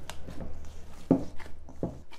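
Minced meat mixture being kneaded and squeezed by gloved hands in a stainless steel bowl: soft, wet squelches, a few distinct ones about a second in and near the end.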